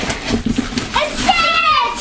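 Paper wrapping being torn and rustled off a large box, followed about a second in by a child's high, drawn-out vocalising.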